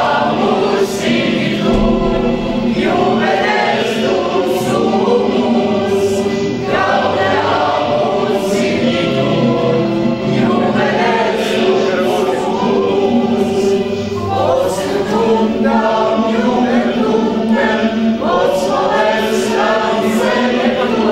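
A small mixed choir of teenage boys and girls singing together in chorus, with held notes and sung words.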